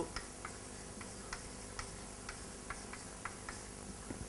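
Chalk clicking and tapping against a blackboard as a word is written by hand: short, irregular clicks, two or three a second, over a faint steady room hum.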